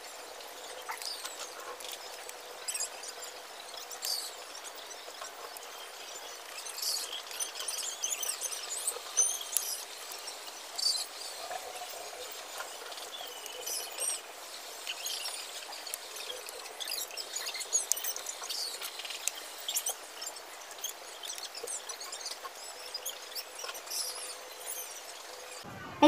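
Faint clicks and small rattles of a plastic tripod phone stand being handled and assembled. Faint high bird chirps come and go in the background throughout.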